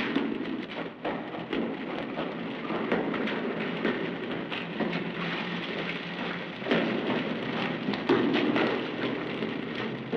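Water running and splashing in a concrete storm drain, with many irregular splashy knocks and footfalls in it, louder in bursts about two-thirds of the way through and near the end.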